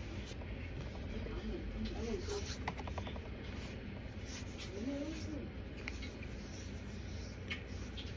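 Raw corn starch being chewed, with a quick run of small squeaky crunching clicks about three seconds in, and hands rubbing the powder off the fingers. Two short hummed 'mm' sounds of enjoyment come through, near two seconds and near five seconds.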